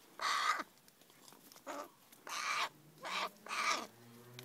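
Pet crow calling, about five short harsh caws spaced through a few seconds, the first the loudest.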